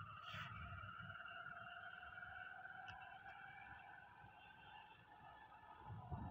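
Near silence: only a faint, steady pair of tones and a low rumble, fading slightly toward the end.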